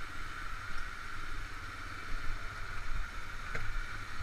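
ATV engine running at low revs down a bumpy dirt trail, under a steady hiss, with a single knock from the ride about three and a half seconds in.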